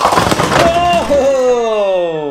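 Chicco Monkey Strike toy bowling set: the hollow plastic monkey cups and their cup bases topple and clatter onto a tile floor as a plastic ball knocks the stack over, a rapid run of clacks over about the first second.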